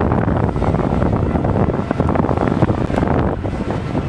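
Wind buffeting the camera's microphone: a loud, unsteady low rumble.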